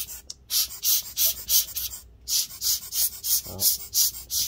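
Hand-squeezed rubber bulb air blower puffing short, rapid hisses of air, about three a second, with a brief pause about two seconds in. It is blowing light dust out of a laptop's cooling fan.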